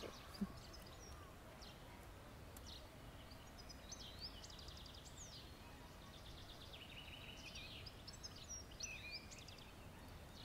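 Faint birdsong: small birds chirping and trilling on and off, busiest in the middle and near the end, over a low outdoor rumble.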